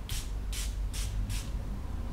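Perfume atomiser spraying: four quick hissing sprays in a row, a little under half a second apart.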